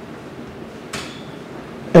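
A pause in speech: low room tone with one short, sharp click about a second in.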